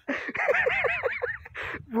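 A person laughing: a quick run of high, rising-and-falling "ha" sounds, about six a second, then a short breath near the end.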